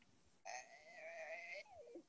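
Faint voice holding a drawn-out, wavering hesitation sound, about a second long, starting about half a second in and ending with a short falling tail.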